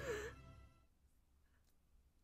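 A woman's short, emotional voiced sigh right at the start, over the tail of music fading out within the first second. After that it is near silence with a few faint clicks.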